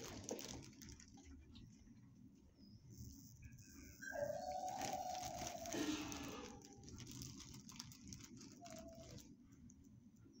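A dog whines: one drawn-out whine about four seconds in that drops lower at its end, then a short one near the end. A low rumble of handling noise runs underneath.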